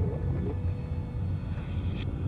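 Steady low rumble of a car driving at night, with a faint held musical tone over it from about half a second in.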